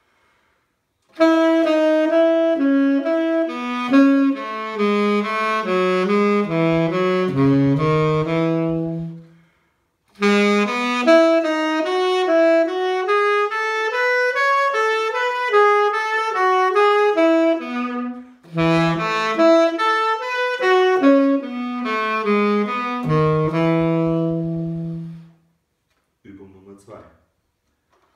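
Tenor saxophone playing a solo practice exercise: three phrases of quick-moving notes with short breaths between them, the first and last each ending on a long held low note.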